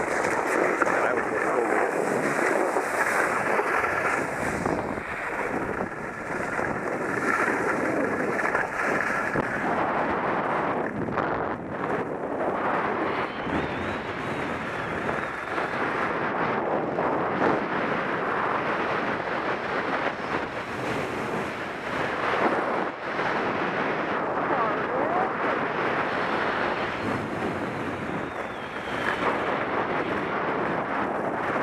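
Skis sliding and scraping over snow in a continuous rushing hiss that swells and eases with the turns, mixed with wind on the microphone.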